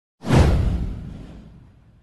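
A cinematic whoosh sound effect with a deep low rumble. It hits suddenly and fades away over about a second and a half.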